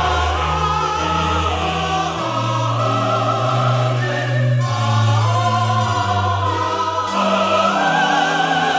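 A mixed choir singing a sacred anthem with electronic keyboard accompaniment: held chords with vibrato in the upper voices over a sustained bass line, the harmony changing about two seconds in and again near the middle.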